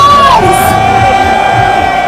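Live concert music with one long held note that slides down in pitch about half a second in and then holds steady, over a cheering crowd.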